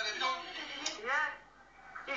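Speech: a voice talking, dying away about one and a half seconds in.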